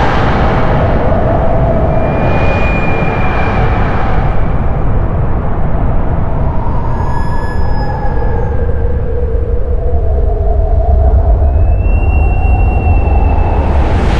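Experimental ensemble music played live on percussion, glasses and wind instruments: a dense, loud low rumble runs throughout, under long held high tones that slide slightly in pitch and come and go.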